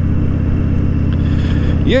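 Harley-Davidson Dyna Fat Bob's V-twin engine running steadily at cruising speed, its even pulse holding one pitch. A voice starts right at the end.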